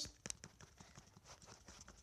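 Faint, irregular small clicks and taps, a few to the second, with a slightly stronger click near the start.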